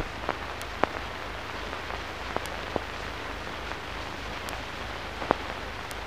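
Surface noise of an old film soundtrack: a steady hiss with a few sharp clicks scattered at irregular moments.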